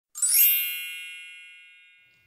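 A bright chime sound effect: a quick rising shimmer just after the start, then a ringing ding of several high tones that fades away slowly.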